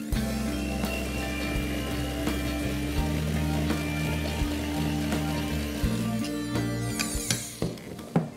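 Electric hand mixer running with its beaters churning cake batter in a stainless steel bowl, stopping near the end.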